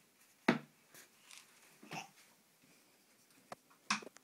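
A toddler striking a drum with a stick: one sharp hit about half a second in, then a few faint taps and small noises, and another short hit near the end.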